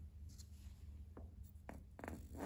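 A few faint clicks of a plastic cap being twisted off a small bottle in the hands, over a low steady hum.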